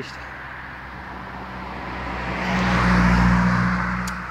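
A car driving past: engine hum and tyre noise swell as it approaches, are loudest about three seconds in, then fade as it goes by.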